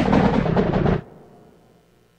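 A loud, noisy booming sound-effect sample played through studio speakers. It cuts off sharply about a second in and leaves a short fading tail.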